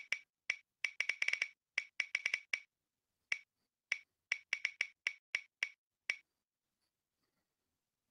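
Tick sound effect of an online number picker wheel as it spins: about twenty sharp, irregularly spaced clicks, like a Geiger counter. The clicks stop a little after six seconds in, as the wheel comes to rest.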